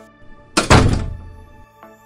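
A single heavy impact hit about half a second in, fading out over about a second, over soft background music with held tones: a transition sound effect between sections of a narrated news podcast.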